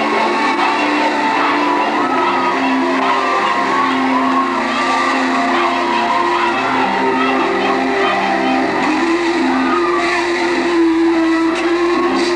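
Music playing steadily: sustained low notes held under a wavering melody line.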